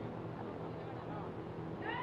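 Background noise of a gathering with a steady low electrical hum. Near the end, a high-pitched wailing sound with a wavering pitch starts and goes on.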